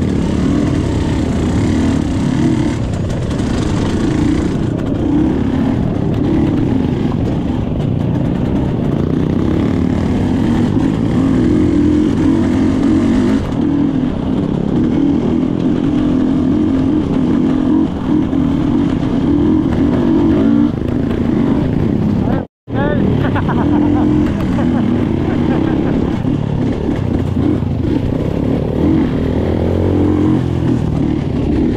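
Off-road dirt bike engine running on a trail ride, its note rising and falling with the throttle. The sound cuts out completely for an instant about three-quarters of the way through.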